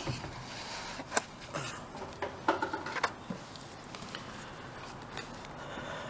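Quiet handling noise from a cardboard box and a paper-towel wrapping: soft rustling with a few light clicks and taps.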